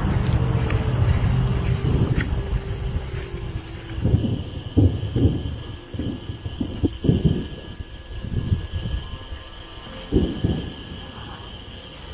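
A deep rumble that fades over the first few seconds, then a run of short, irregular low thuds that sound like bombs.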